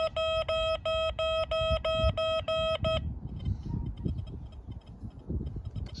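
XP Deus II metal detector giving a target signal on a coin: a mid-pitched beep repeated about three times a second, stopping about three seconds in. A low rumble follows.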